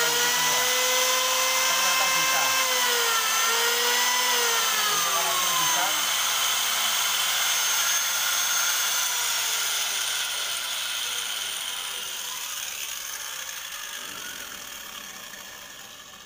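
Electric angle grinder and electric planer running together at full speed, their motor whine dipping briefly twice. They keep running without the supply tripping, then wind down and fade out over the last several seconds.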